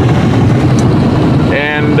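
Steady road and engine noise inside a car cruising on a highway. A man's voice starts near the end.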